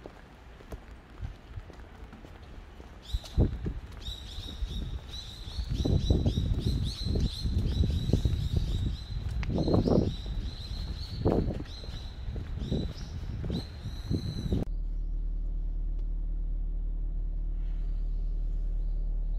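A small bird chirping over and over, short high notes in quick succession from about three seconds in, over irregular low bumps of footsteps on wet pavement. Near the end the outdoor sound cuts off suddenly, giving way to a steady low hum inside a car.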